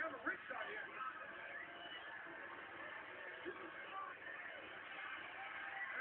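Arena crowd noise: a steady din of the audience, with a few voice-like sounds at the very start.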